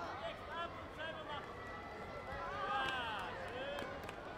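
Many voices calling and shouting at once in a big echoing hall, with one louder shout about three seconds in and a sharp knock just before the end.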